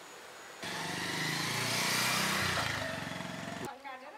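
Motorcycle engine running loudly, starting suddenly about half a second in, growing louder, then cut off abruptly near the end.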